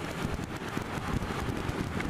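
Wind buffeting the microphone over the running engine and road noise of a Suzuki Bandit motorcycle on the move, its inline-four steady, riding on knobbly Continental TKC 80 tyres.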